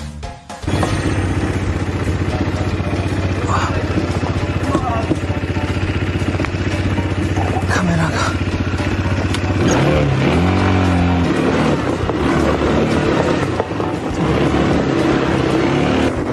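ATV (quad bike) engine running steadily, starting about half a second in, heard close up from the moving vehicle.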